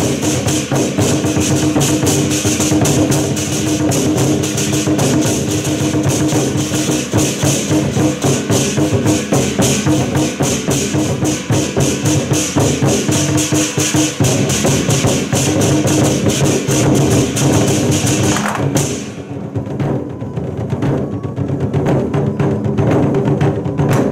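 An ensemble of large Chinese barrel drums beaten with wooden sticks in a fast, dense rhythm. A bright, metallic high shimmer sits on top of the drumming and drops out suddenly about nineteen seconds in, leaving the drums alone.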